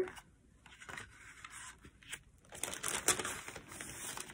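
Paper card stock and envelopes being handled and slid across a wooden tabletop: soft rustling and light scraping, sparse at first and busier from about halfway through.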